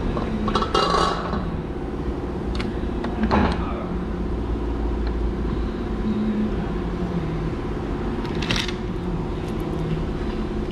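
Hard metal clinks and knocks as an oil filter is set into a steel bench vise and tools are handled on a metal workbench, a few short clatters over a steady background hum.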